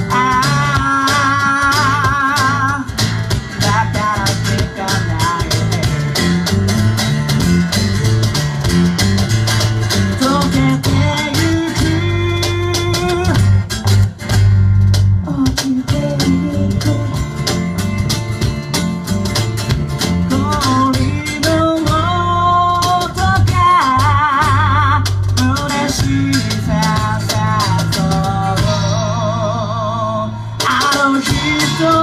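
Live acoustic band: a male singer with vibrato over strummed acoustic guitar, electric bass and light percussion with cymbal. The voice comes in near the start and again in the last few seconds, with instrumental stretches between.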